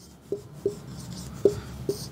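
Marker pen writing on a whiteboard: about four short squeaks and taps of the tip as a word is written.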